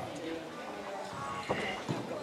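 Bare feet thudding on a wooden sports-hall floor during a karate kata, two thuds close together in the second half. Voices of people in the hall continue underneath.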